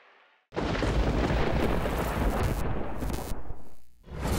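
Produced transition sound effect for a highlight title card: a sudden deep boom about half a second in, running on as a loud rushing rumble for about three seconds before fading away.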